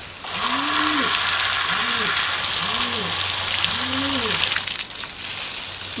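Garden hose spraying water onto a runner's nylon rain jacket, a steady hiss that drops away near the end. Short wordless vocal sounds come through underneath it several times.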